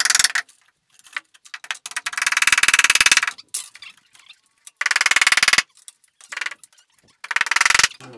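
Short bursts of rapid metallic clicking and rattling as a recessed can-light housing is fitted and adjusted on its sheet-metal bar hangers. There are four bursts, each lasting up to about a second, with quiet gaps between them.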